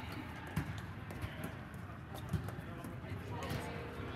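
Volleyball rally: a handful of sharp thuds of the ball being struck and players' feet on the sport court, inside a large inflated sports dome.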